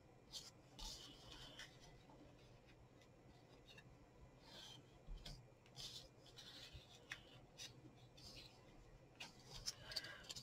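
Near silence, broken by a few faint, brief rustles of cardstock as hands press and handle the glued corners of a small paper box.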